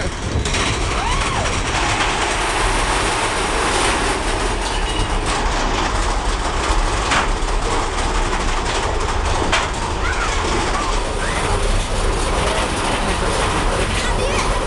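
Big Thunder Mountain Railroad mine-train roller coaster running at speed on its track, heard from a rider's seat: a loud, steady rumble and clatter of the wheels with a rush of air, and a few clacks along the way.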